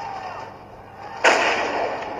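A single gunshot from a film soundtrack about a second and a quarter in, sudden and loud with a trailing echo. It is played back on a computer and re-recorded off the screen, so it sounds thin.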